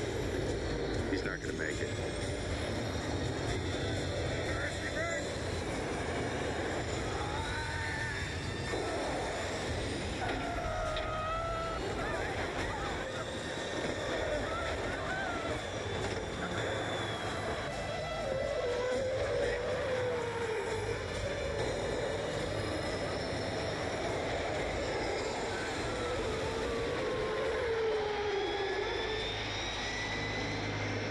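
Jet airliner engines running as the plane comes in to land, with a rising whine near the end. This is mixed with music and indistinct voices.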